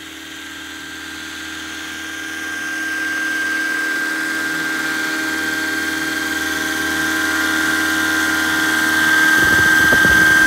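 Radio-controlled scale Pave Hawk helicopter's electric motor and rotors whining at a steady pitch, growing steadily louder as it flies in closer. Near the end a gusty low rumble of rotor wash hitting the microphone joins the whine.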